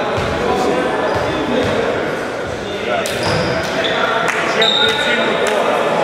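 Basketball court sounds in an echoing gym: a basketball bouncing on the floor and players' voices, with several short, high squeaks from about halfway on.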